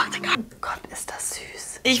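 Two women whispering and murmuring quietly, mostly breathy with little voiced sound.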